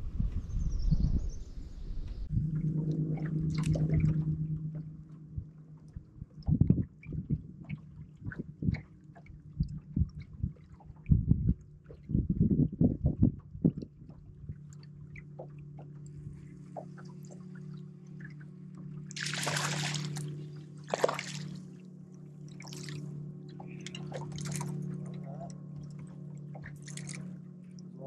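Bow-mounted electric trolling motor humming steadily in the second half, with several short water splashes as a hooked bass is brought to the boat. Before that, a run of thumps and knocks on the boat deck.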